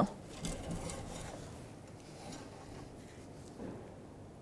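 Faint rubbing and handling sounds as an engine oil dipstick is drawn from its tube to be read, with a few light ticks.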